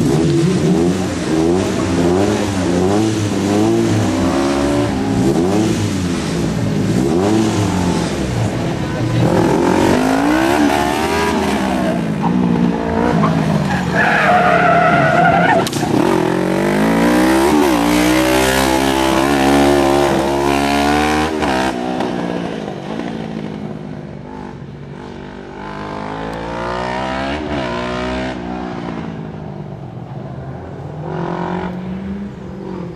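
Competition slalom car's engine revving up and down over and over as the car weaves between the gates, with a short tire squeal about halfway through.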